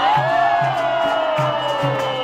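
Capoeira roda music: an atabaque drum beats a steady rhythm under the band's other instruments, while a long held note slides slowly downward.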